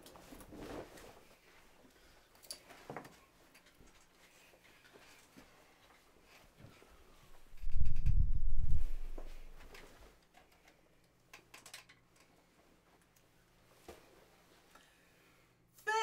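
Faint rustling, shuffling and small clicks of people moving about and sitting down, with a loud low rumble of microphone handling noise for about a second and a half, about eight seconds in, as someone comes right up against the camera.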